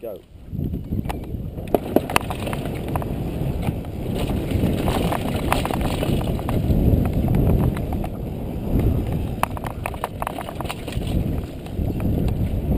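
Downhill mountain bike descending a dirt trail at speed: wind rushing over the on-bike camera's microphone, tyres rumbling over the dirt, and the bike's frame and drivetrain clattering with sharp clicks and knocks over the bumps. The noise builds within the first second after the start ramp and stays rough and uneven.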